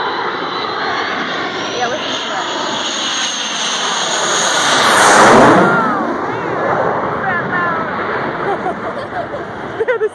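Blue Angels F/A-18 Hornet jet flying low overhead on its landing approach. Its high whine rises over the first two seconds, the noise swells to a peak about five seconds in, and the pitch drops as it passes, then the sound eases off.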